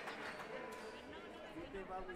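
Indoor sports-hall ambience: faint, echoing voices of players and spectators, with a few light knocks of a ball bouncing on the wooden court.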